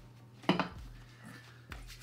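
Quiet room tone with a steady low hum, broken by a short spoken word about half a second in and a single sharp click near the end.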